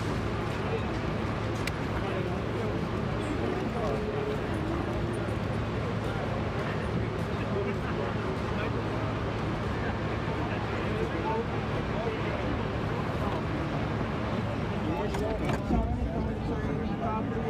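Steady low hum of an R32 subway car standing at a station platform, with faint voices in the background.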